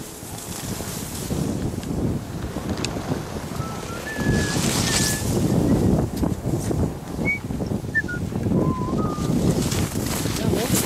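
Wind buffeting the microphone of a skier's body-worn camera over skis sliding on packed snow, louder from about four seconds in. A few brief high chirps sound in the middle.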